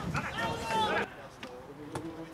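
Voices calling out on an outdoor football pitch during the first second, then a quieter stretch broken by a single sharp knock near the end.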